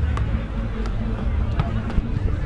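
Open-air ambience beside a football pitch: indistinct background voices over a steady low rumble, with three faint short taps about two-thirds of a second apart.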